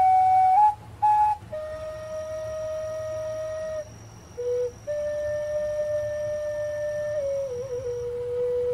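Background music: a slow melody of long held notes, broken by short gaps, with a small falling turn near the end.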